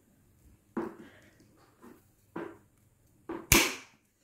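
Big wire cutters snipping through a steel fish hook: a few soft clicks and handling rustles, then one loud, sharp snap about three and a half seconds in as the hook is cut.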